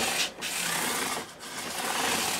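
400-grit cloth-backed sandpaper on a block rubbed along the fret ends at the fingerboard edge of a bass neck, a dry rasping hiss in three long strokes with short breaks between them. This is a fret-end dress, softening the edge so the fret ends do not stick out sharp.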